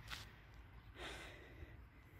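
Faint heavy breathing of a walker: two short exhales, one at the start and another about a second in.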